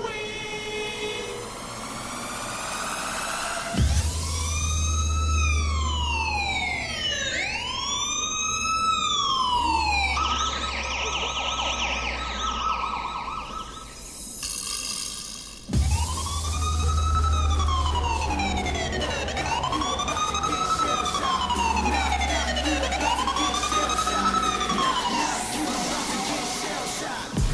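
Police siren sound effect wailing in slow rises and falls, each about two to three seconds long, laid over a heavy bass line in a dance music mix. A rising sweep leads into it, and it breaks off briefly about two thirds of the way through before starting again.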